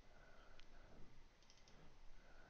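Near silence with faint computer mouse clicks: one about half a second in, then a few quick ones later on, as an on-screen settings dialog is opened.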